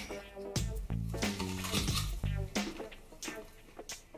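Background music with a bass line and a beat; the bass drops out about two and a half seconds in.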